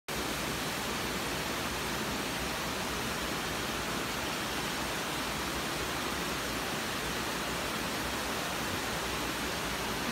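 Small woodland waterfall and the rocky creek cascading below it: a steady, even rush of water.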